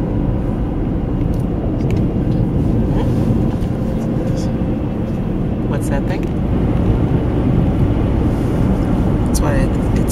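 Steady road and engine noise of a car driving on a paved highway, heard from inside the moving car. A voice comes in briefly near the end.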